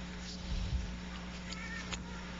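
Steady recording hiss and a low hum in a pause between spoken phrases. A few soft low thumps come about half a second in, and faint clicks follow near the end.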